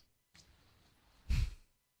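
A single short breathy exhale close to a microphone, a little over a second in; the rest is nearly quiet.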